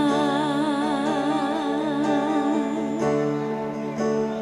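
Live dangdut band playing with a female singer holding one long note with wide, even vibrato over sustained keyboard chords; the held note ends about three seconds in and the music carries on.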